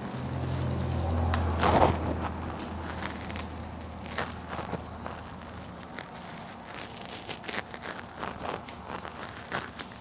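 Small clicks, taps and scrapes of a bristle brush dabbing soapy leak-check solution onto propane line fittings, with a brief louder rustle about two seconds in. A low steady hum sits under the first six seconds.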